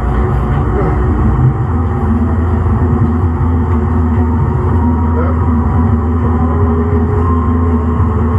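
Siemens S200 light rail vehicle's traction equipment running with a steady low drone and several steady hum tones above it. A higher whine rises slightly near the end.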